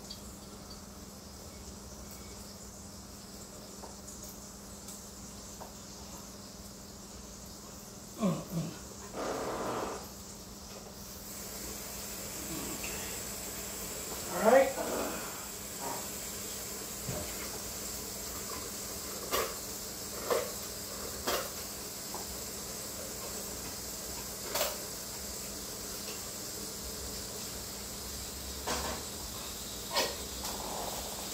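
Food frying in skillets, a steady faint sizzle, with several light knocks and clicks of handling in the second half and a couple of short vocal sounds.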